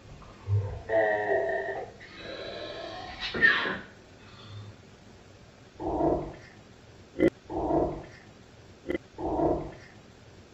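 Audio slowed to half speed: deep, drawn-out, growl-like voice sounds, ending in three separate low moans with a couple of sharp clicks between them. The on-screen captions take them for a spirit voice saying "let my wife hear" and "I am the true lord".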